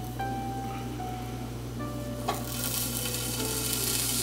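Onion and bell pepper rings going into a hot, oiled non-stick pan. A soft tap comes a little past two seconds in, as a pepper ring goes down, and then a sizzle that grows louder toward the end. Soft background music plays underneath.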